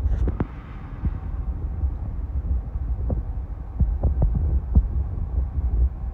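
Low, steady rumble of a car's running gear and tyres heard inside the cabin while driving slowly, with a few soft knocks.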